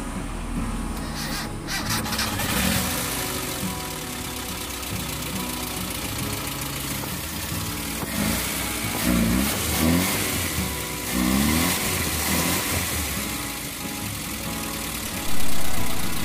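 Carbureted petrol engine of an old Mitsubishi L300 van starting and then running steadily, just after its valve clearances were reset to 0.25 mm intake and 0.30 mm exhaust.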